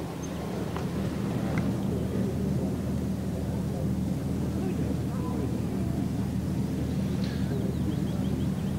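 A steady low drone with faint, indistinct voices murmuring in the background.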